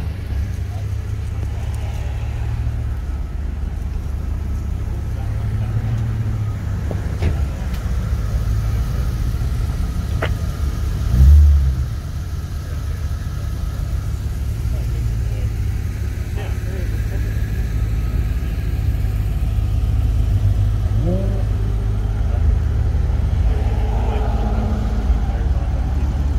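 Car engines idling with a steady low rumble, and one short, much louder burst about eleven seconds in.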